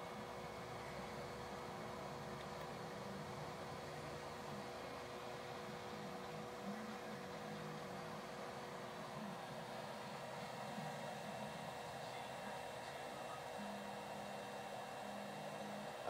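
Steady electric hum and whir, with two faint steady tones, from a 750-watt power inverter running an electric pump that has no load on it.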